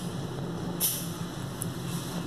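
Steady low background hum and hiss of an indoor shooting range, with a brief faint hiss just under a second in.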